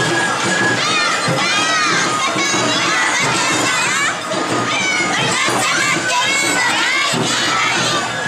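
Group of women Awa odori dancers shouting their dance calls, many high-pitched voices calling out and overlapping.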